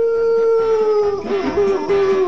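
A long dog-like howl, held on one slightly falling pitch and then wavering through its second half: a comic howl for the "yapping puppy" sportscaster.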